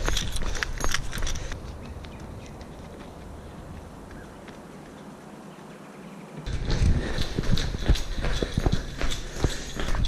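A runner's footsteps on a paved trail with a handheld action camera jostling and rumbling as he jogs. About a second and a half in the sound drops to a faint outdoor hush, and the footfalls and handling rumble come back loud about six and a half seconds in.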